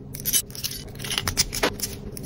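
Metal split key ring and clasps clicking and scraping against each other as the ring is worked onto a keychain: a quick, irregular series of small metallic clicks.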